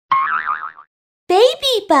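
Cartoon logo sting: a short warbling, boing-like tone, then, about a second later, a high cartoon voice giggling.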